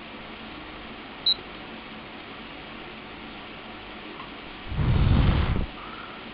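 A person blows a single breath of just under a second, near the end, at the vane of a handheld multifunction anemometer, a rush of air on the microphone that spins the vane to raise the wind-speed reading. Before it, about a second in, comes a short high beep.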